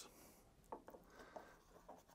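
Near silence, with a few faint light clicks of the plastic air filter cover being handled.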